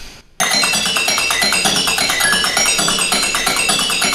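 Percussion music with a fast, even beat, cutting in abruptly a little under half a second in after a brief near-silent gap.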